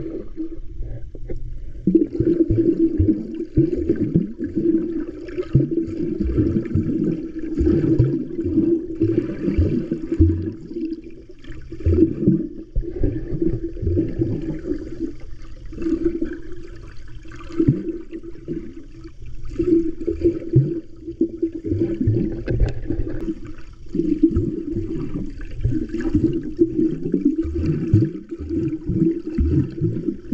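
Muffled sloshing and gurgling of water heard by a camera microphone held underwater, rising and falling in repeated surges every second or two as a swimmer strokes and kicks.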